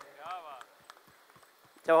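A man speaking into a microphone pauses between phrases. In the gap come several faint, scattered hand claps, soft irregular clicks over about a second, before his voice resumes near the end.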